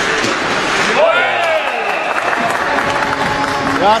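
Ice hockey arena crowd cheering and applauding as a goal is scored, with a swell of noise in the first second followed by shouts and held calls.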